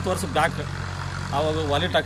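Brief stretches of a man's speech over a steady low hum of an idling engine.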